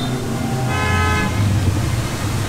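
A vehicle horn toots once, briefly, about a second in, over a steady low hum of street traffic.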